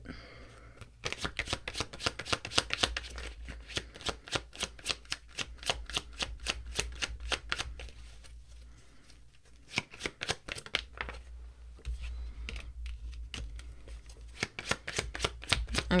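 A tarot deck being shuffled by hand: rapid runs of short card clicks and flicks, easing off about halfway through and picking up again toward the end.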